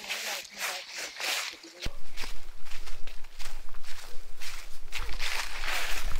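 Footsteps walking through dry fallen leaves on a forest trail, a step roughly every half second. About two seconds in, a low rumble comes in and the steps get louder.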